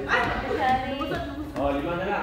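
Short high-pitched shouted calls from young volleyball players and spectators in a sports hall, coming in about three brief bursts.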